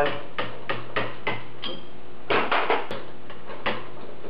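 Socket wrench and socket working bolts loose: a string of sharp metallic clicks and clinks, irregular, about two or three a second, with a short pause midway.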